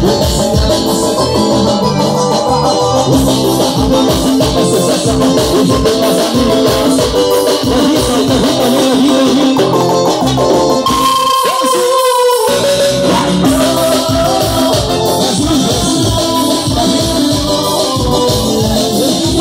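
Live band music at full volume: keyboard over a steady beat of drums, bass and shaker-like percussion. About eleven seconds in, the bass and drums drop out for a moment under a held keyboard note, then the beat comes back.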